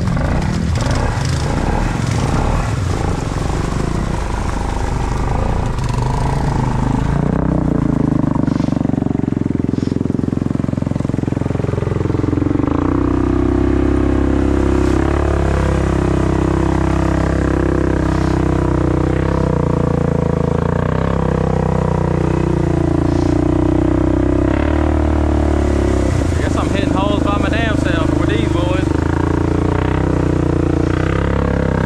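Can-Am ATV engine running under load through mud, its revs rising and falling every few seconds as the throttle is worked.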